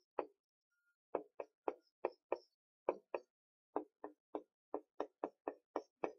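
Felt-tip marker writing on a whiteboard: a quick, uneven series of short taps and squeaky strokes, about three a second, as kanji characters are written stroke by stroke.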